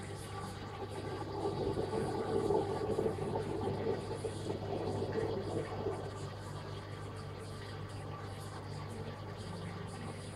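A steady low hum runs throughout. From about one to six seconds in, a louder, rougher murmur rises over it and then fades.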